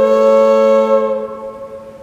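Low whistle and keyboard holding one long note that fades away after about a second.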